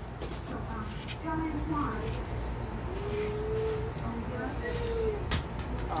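A woman's voice, soft and wordless, sounding a few drawn-out notes, one of them held for most of a second, over a steady low background hum.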